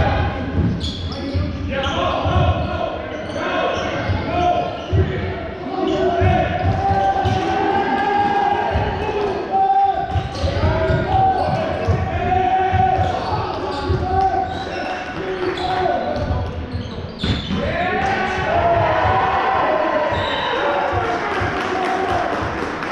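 Basketball bouncing repeatedly on a sports hall floor during play, with shouted calls from players and the bench carrying through the large hall.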